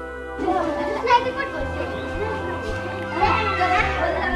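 Many children's voices chattering and calling out together over background music with long held notes; the voices start about half a second in.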